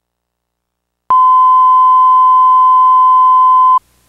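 A loud, steady single-pitched electronic test tone, like a line-up beep, starting suddenly about a second in after dead silence and cutting off abruptly near the end, about two and a half seconds long. Faint hiss follows it.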